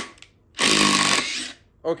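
Makita 40V XGT cordless impact driver running on a screw in wood. One burst of a little under a second begins about half a second in, and the tail of an earlier burst cuts off at the very start.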